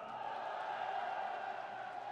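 Crowd of supporters cheering, a steady, fairly faint wash of many voices.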